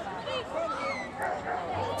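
A dog whining and giving short high yips over people chattering in the background.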